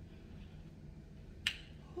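A single sharp finger snap about one and a half seconds in, over a faint steady room hum.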